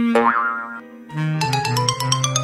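Playful background music with a short rising cartoon 'boing' sound effect near the start; the music dips briefly, then comes back with low held notes and a quick run of short plucked notes.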